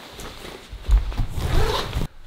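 Zipper of a winter parka being pulled open, with rustling of the jacket fabric, louder from about a second in.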